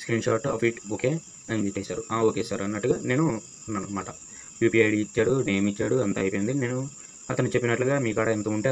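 A person talking in short phrases with brief pauses, over a steady high-pitched hiss.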